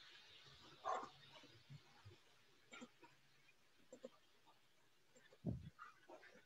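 Near silence on a video call, broken by a few faint short sounds: the loudest about a second in, weaker ones near three and four seconds, and a lower one near the end.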